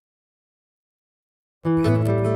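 Silence, then about a second and a half in a capoed steel-string acoustic guitar starts up suddenly and loudly, fingerpicked, opening on a full chord over a low bass note.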